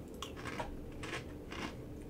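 A person chewing a mouthful of dry cinnamon-toast-style cereal squares (Gingerbread Toast Crunch), with four faint crunches about two a second.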